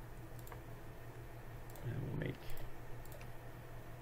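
Computer mouse buttons clicking: a handful of short, sharp clicks spaced irregularly, over a steady low hum.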